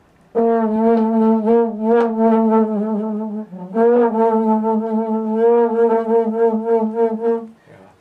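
French horn playing the 'laughing' extended-technique effect: two long notes, the second starting with a short upward scoop, each with a fast wavering running through it.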